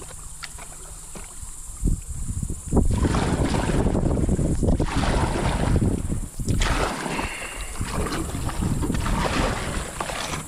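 Water splashing and rushing around a paddled kayak, quiet at first and then a loud continuous rush from about three seconds in.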